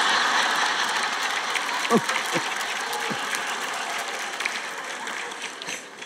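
Audience applause and laughter, loudest at the start and dying away slowly, with a few short voices laughing out about two and three seconds in.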